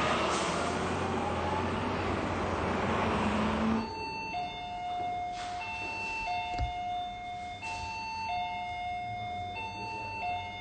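Street traffic noise with a passing bus. About four seconds in it cuts to a clean electronic two-note signal that alternates high and low, the low note held longer, about once every two seconds, like a two-tone siren.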